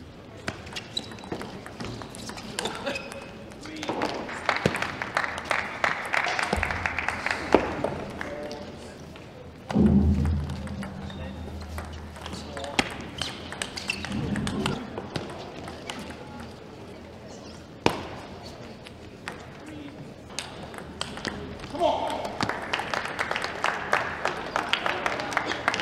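Table tennis ball clicking off the bats and the table in short rallies, a sharp click at a time with gaps between points. Voices come from the hall between the clicks, loudest about ten seconds in.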